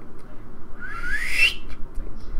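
A person whistling once: a short whistle that rises in pitch, lasting under a second, about halfway in.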